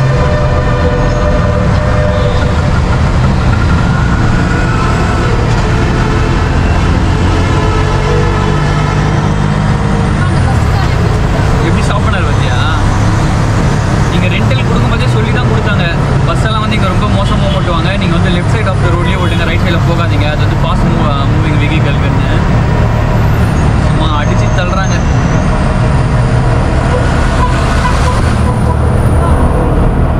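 Tuk-tuk's small engine running steadily, with tyre and traffic noise, heard from inside its open-sided cabin while it drives.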